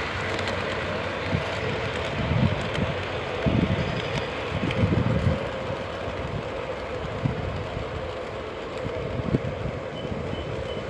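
O gauge model passenger train running along the track past the camera: a steady rumble of wheels on rail, easing slightly as it moves away, with a few low thumps around the middle.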